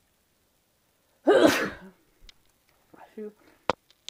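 A person sneezes once, loudly and suddenly, about a second in. A short, faint vocal sound follows, then a sharp click near the end.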